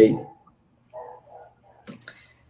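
Speech over a video call: the end of a spoken "ok", then a short faint voice sound about a second in, with otherwise little sound.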